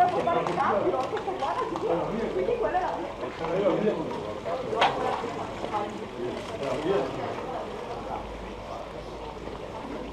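Indistinct chatter of several people talking, quieter over the last few seconds, with one sharp click about five seconds in.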